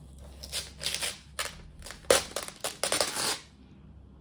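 Thin plastic sheet protector crinkling in a quick run of sharp rustles as it is pressed down over silver leaf and then lifted off. The loudest crackle comes a little past two seconds in.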